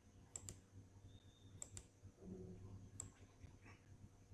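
Faint computer mouse button clicks: two quick double-clicks in the first two seconds, then a single click about three seconds in.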